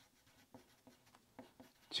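Pencil writing on paper: a few faint, short scratching strokes as words are written out by hand.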